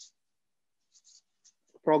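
A pause in a man's speech: near silence with a few faint, brief high ticks, then he starts speaking again just before the end.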